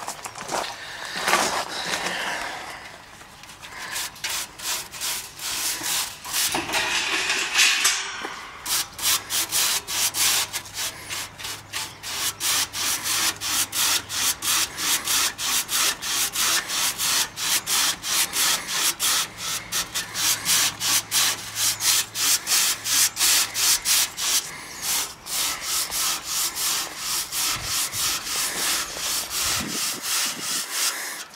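A hand brush scrubbing the fins of an air-conditioner condenser coil, dry-brushing caked dirt off them. The strokes are irregular at first, then settle into a quick back-and-forth of about three a second.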